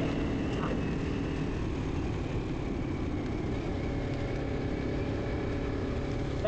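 Motorcycle riding at a steady cruising speed: an even engine hum under a constant rush of wind and road noise.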